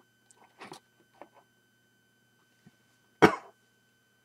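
A person coughing once, a single loud, short cough about three seconds in, after a few faint small mouth or handling noises.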